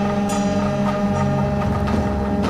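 Live music: two long blown horn-pipes sound a steady low drone with held higher tones above it, over light percussion taps.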